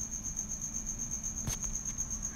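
A steady, high-pitched, rapidly pulsing trill like a cricket's, over a faint low hum, with a single sharp click about one and a half seconds in.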